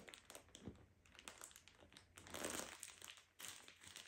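Faint crinkling of a plastic clip-lock bag as hands press down on it, squeezing the air out around rolled clothes, a little louder for a second or so in the middle.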